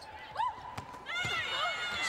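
Basketball shoes squeaking in short, high arching squeals on a hardwood court, with a few thuds of the ball bouncing.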